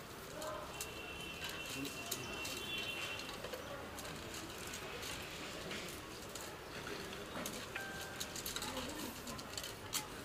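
Scattered light clicks and knocks of arrows being handled and counted, over faint indistinct voices. A bird gives a high, steady call from about a second in that lasts about two seconds.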